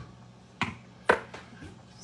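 Two light knocks of cookware against the pot, about half a second apart with the second louder, followed by a few fainter ticks, over a faint steady hum.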